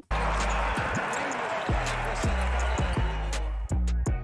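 Basketball game audio: arena crowd noise with a ball dribbling on the court, a thud about every half second, over music with a heavy bass line.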